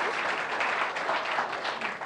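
Studio audience applauding, a dense patter of many hands clapping that thins out near the end.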